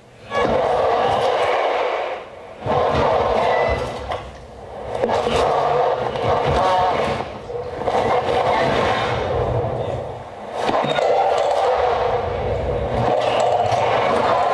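Dense, grainy electronic noise from a live voice-and-laptop performance, coming in stretches of one to three seconds with brief dips between them, over a low rumble.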